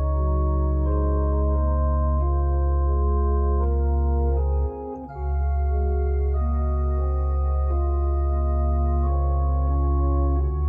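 Two-manual digital home organ playing sustained chords that change every second or so over a held deep pedal bass note. The bass and the whole sound drop away briefly about halfway through, then come back.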